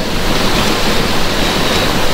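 A steady, even hiss like rushing air or surf, fairly loud and without speech, with a faint high steady tone in it near the end.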